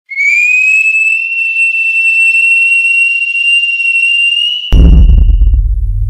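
A loud, high whistle that rises slightly at first and then holds one pitch for about four and a half seconds. It is cut by a sudden deep boom that rumbles away.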